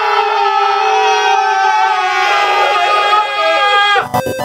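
Several men yelling together in one long, held scream at high pitch, which cuts off suddenly at the end.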